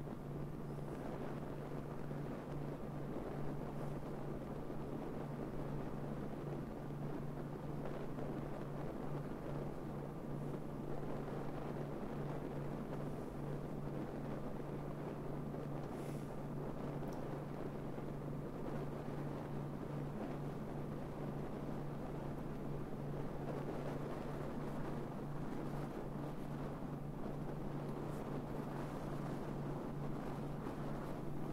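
Wind noise on the microphone of a camera mounted on the roof of a moving car, over steady road and tyre noise with a constant low drone, the whole turned well down.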